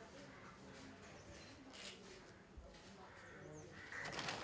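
Near silence: faint background with distant voices and an occasional faint bird chirp.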